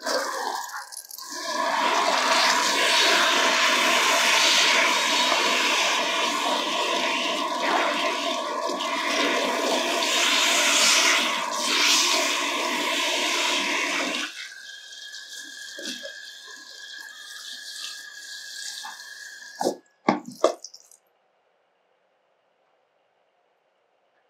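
Handheld salon shower head spraying water onto hair at a wash basin, loud and steady for about fourteen seconds, then quieter with a thin steady tone. A few sharp knocks come near twenty seconds, and the sound cuts off suddenly.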